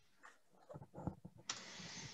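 Faint scattered clicks and light knocks, then a short soft hiss from about three quarters of the way in.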